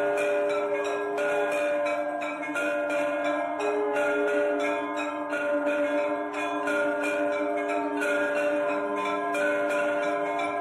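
Temple bells rung continuously: rapid strikes over several overlapping, sustained ringing tones.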